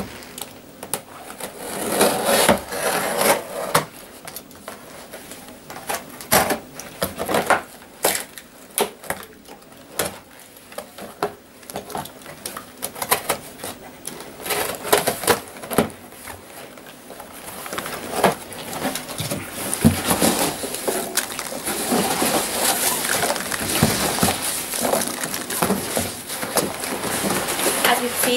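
A cardboard parcel being opened by hand: a blade scratching through packing tape, tape ripping, and cardboard flaps being pulled open, in a series of short scrapes and rips. From about two-thirds of the way through, a denser, continuous rustling as hands dig into the loose packing peanuts inside the box.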